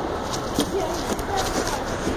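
Background hubbub of a busy indoor public space: faint distant voices over a steady murmur, with a few light clicks.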